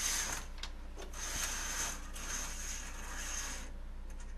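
Curtain rings scraping and rattling along a curtain rod as the backdrop curtain is drawn across: a short pull, then a longer one.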